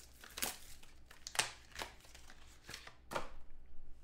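Hard plastic graded-card slabs being handled, giving a few sharp clicks and clacks as they are gripped, swapped and set down, the loudest about a second and a half in.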